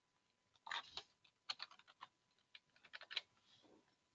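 Faint computer keyboard keystrokes: a handful of soft, irregular clicks.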